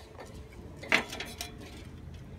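Wooden ladder knocking as someone climbs it: one sharp clack about a second in, with lighter knocks after it.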